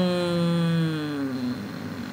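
A woman's voice holding one long, drawn-out vocal sound, a single note that slides slowly down in pitch and stops about a second and a half in.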